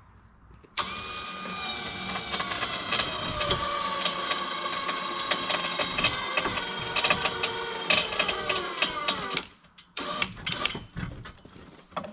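An electric ATV winch running for about nine seconds, lifting a log into a log arch: a whine that starts suddenly and sags slowly in pitch as it takes up the load, then stops. A few knocks and clinks follow.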